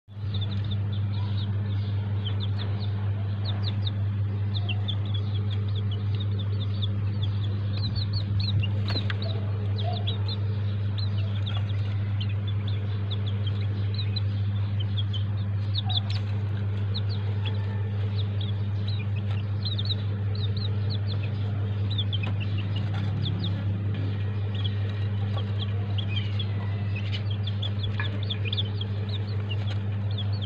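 Chicks peeping all the while: a dense run of short, high, falling cheeps, over a steady low hum.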